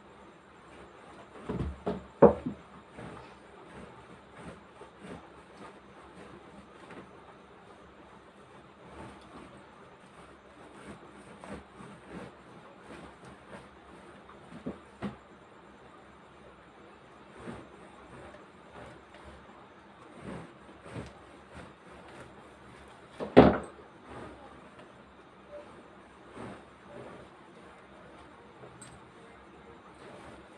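Handling noise from a clothes iron being worked over fabric: mostly quiet, with scattered soft knocks and two sharper knocks, one about two seconds in and a louder one about three-quarters of the way through.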